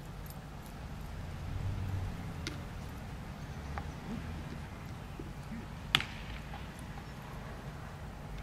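A steady low rumble of outdoor background noise, with a few faint clicks and one sharp click about six seconds in.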